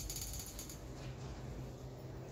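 Room tone with a steady low hum, and a fast run of small clicks, like a ratchet, during the first second.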